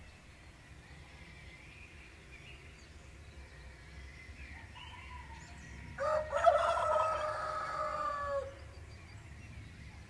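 A rooster crows once, a single call of about two and a half seconds that starts suddenly a little past the middle and falls away at its end. Faint songbird chirping runs underneath.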